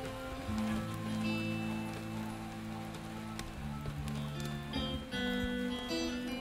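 Acoustic guitar playing a quiet, slow passage of plucked notes and chords that ring on and change about once a second.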